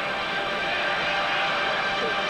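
Television news transition sting: a dense rushing noise with several steady held tones running through it at an even level.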